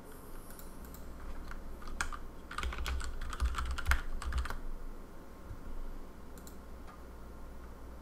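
Typing on a computer keyboard: a quick run of key presses entering a file name, densest from about two to four and a half seconds in.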